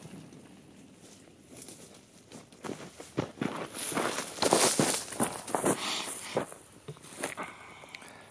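Irregular crunching on gravelly dirt close to the microphone, building to its loudest about four to six seconds in and fading near the end.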